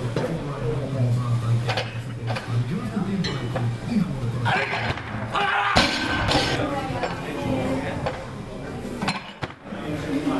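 Background music and voices, with one sharp, loud knock about six seconds in: a loaded barbell with bumper plates dropped onto the lifting platform.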